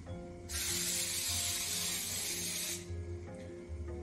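Aerosol can of cooking spray sprayed in one continuous hiss of about two seconds, starting about half a second in, over background music.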